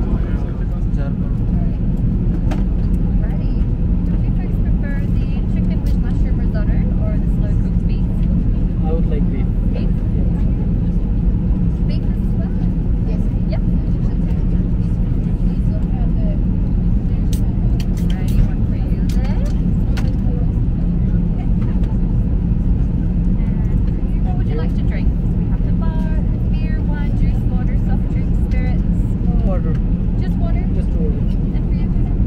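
Steady low drone of a jet airliner cabin in cruise flight, with faint voices of passengers and crew underneath. A few light clicks come around the middle.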